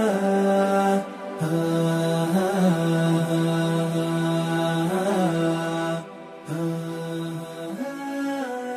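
Closing music: a solo voice chanting long held notes with short wavering ornaments, breaking off briefly twice.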